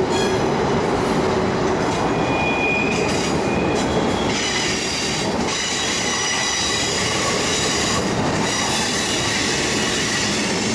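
Freight cars rolling past on steel wheels: a steady rolling rumble with a high-pitched squeal from the wheels. The squeal changes pitch about halfway through.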